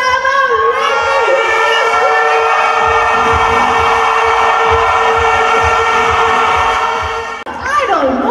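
A woman's voice holding one long shouted note through a microphone and PA for about seven seconds over a cheering crowd, cut off suddenly near the end.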